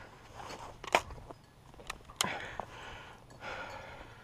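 Footsteps and rustling on a dirt forest track, with three sharp clicks or knocks about one, two and two and a quarter seconds in.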